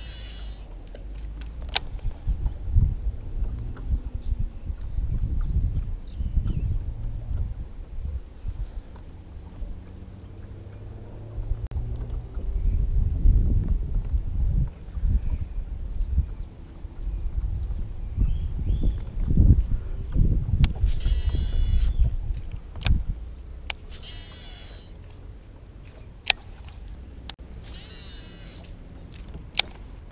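Gusts of wind rumbling on the microphone. In the last third come several short, buzzy spells of a baitcasting reel being cranked, with a few sharp clicks.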